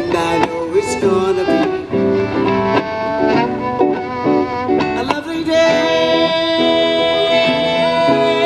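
Live acoustic music: a violin playing a moving melodic line over guitar, settling about five and a half seconds in onto one long held note.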